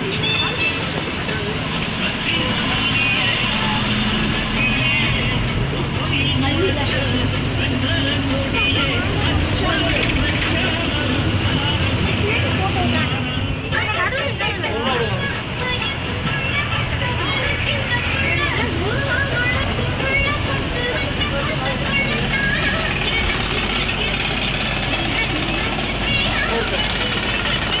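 Bus engine and road noise heard inside the cabin, steady throughout, with voices and music mixed over it.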